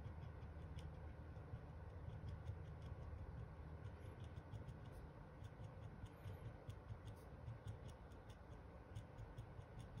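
Faint, irregular light ticks of a paint touch-up pen's tip dabbing against the steel serrations of a pistol slide, over a low steady room hum.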